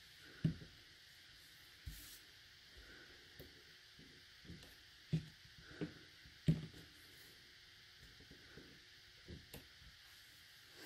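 Faint, soft taps and knocks, about half a dozen at uneven intervals, of a clear acrylic stamp block being inked on an ink pad and pressed onto cardstock, along with paper being handled.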